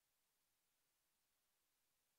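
Near silence: the sound track is all but dead, with only a faint, even hiss.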